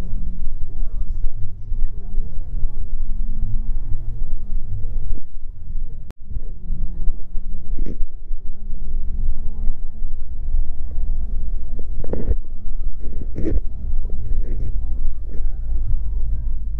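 Outdoor car-show ambience: background music and the murmur of voices over a steady low rumble, with a couple of sharp knocks near the end.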